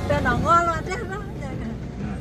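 A short voice phrase in the first second, over the low steady noise of a car driving on a gravel road.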